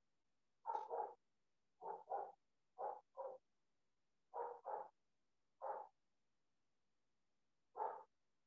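A dog barking, quietly, about ten short barks, mostly in quick pairs, with pauses of a second or more between them.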